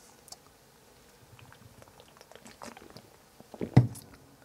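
A person drinking beer from an opened aluminium can: faint quiet mouth and swallowing sounds with a few small clicks, then a short, much louder low sound about three and a half seconds in.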